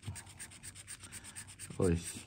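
A thin pointed tool scraping the latex coating off a paper scratch-off lottery ticket, in quick, even strokes of about six a second. A short exclamation ("ui") comes near the end.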